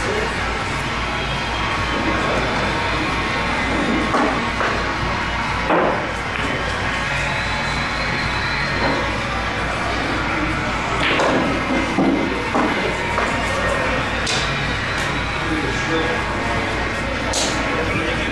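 Busy pool-hall ambience: background music and crowd chatter, with a few sharp clicks and knocks of billiard balls, the loudest about six and twelve seconds in.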